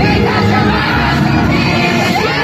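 Pop song playing loud over a concert PA while a crowd of fans screams and shouts along.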